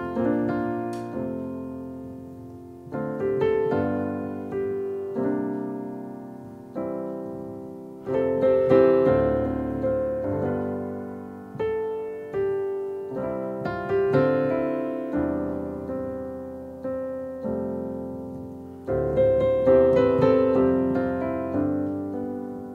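Roland RD-2000 digital stage piano playing its RD-700GX expansion grand piano sound, a slow two-handed chordal passage. Chords are struck about every one to two seconds, each ringing and fading before the next.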